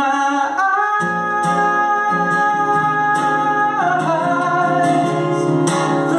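A man singing a slow country ballad over strummed acoustic guitar. About a second in he holds one long note for nearly three seconds, then his voice slides down.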